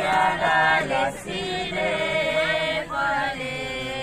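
A small group of voices singing together without instruments, in long held notes with brief breaths between phrases.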